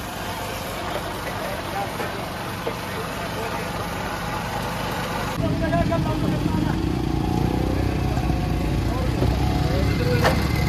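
Busy street ambience: vehicle engines running and faint crowd chatter. From about halfway a heavier low engine rumble takes over.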